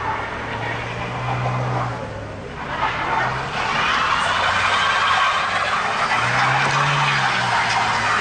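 A small car creeping over a packed-snow street, engine revving up and down twice. From about three seconds in, a louder rushing tyre noise with a wavering whine joins it as the car comes close.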